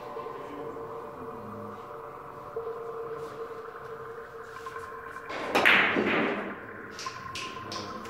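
Ambient background music with steady sustained tones, over a Russian billiards shot on a pyramid table. About five and a half seconds in comes a loud sudden clatter lasting about a second, the loudest sound here, followed by a few sharp clicks near the end.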